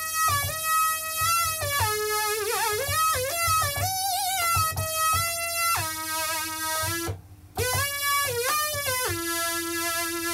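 Moog Rogue monophonic analogue synthesizer playing single notes, its pitch gliding smoothly from note to note and bent up and down with the pitch wheel. For about two seconds the modulation wheel adds a wobbling vibrato to the pitch. A steady lower tone holds underneath, and the sound drops out briefly about seven seconds in.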